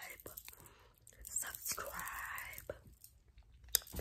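A person's faint breathy voice, close to a whisper, with soft mouth clicks and one sharp click near the end.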